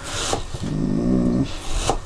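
A man's drawn-out hummed 'mmm' of approval, rising then falling, after a short breathy rush at the start; a single sharp click of the knife blade on the plastic cutting board near the end.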